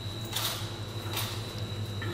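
A man sipping a small glass of liqueur, two soft slurping sips, over a steady low hum.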